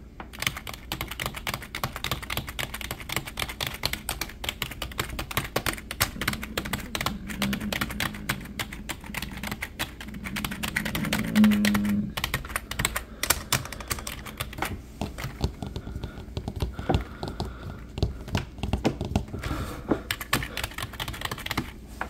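Computer keyboard keys tapped and clicked rapidly by fingers, a dense run of plastic key clicks that grows sparser in the second half. Just past halfway there is a brief, louder low hum.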